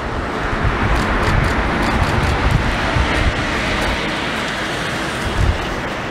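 Wind buffeting an outdoor microphone: an uneven low rumble over a steady broad hiss of background noise.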